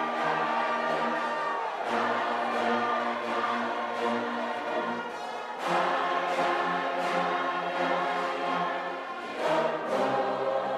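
A choir singing slow, held chords, the harmony shifting about every four seconds with a swell at each change.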